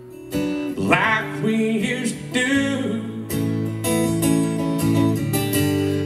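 Live acoustic guitar strummed in a steady rhythm, with a man singing a line of an alternative-country song through the first half, then guitar alone.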